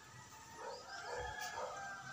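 An animal's drawn-out, wavering pitched call lasting about a second and a half.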